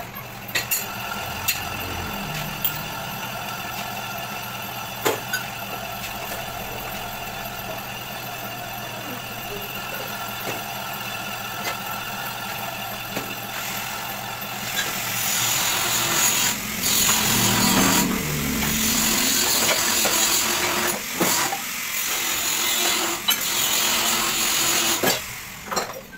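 Metal lathe running with a boring bar cutting inside the bore of a cast idler wheel, re-boring its bearing seat: a steady motor and gear hum with a few clicks. About halfway through a louder, hissing cutting noise sets in for about ten seconds, and the machine stops just before the end.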